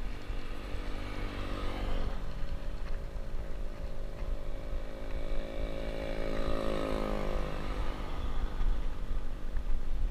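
A motor vehicle's engine passes close by, building over a couple of seconds and dropping in pitch as it goes past about seven seconds in. It is heard over a steady low wind rumble on the microphone.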